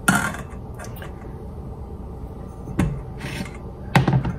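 Stainless steel saucepan slid across a glass-ceramic cooktop: a short rasping scrape at the start, then a quiet stretch and two light knocks near the end.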